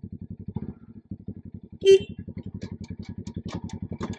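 Motorcycle engine idling with a steady rapid pulse. There is a short, louder sound about two seconds in and a few light clicks after it.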